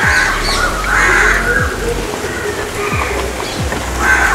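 Crows cawing, several short calls, the loudest in the first second.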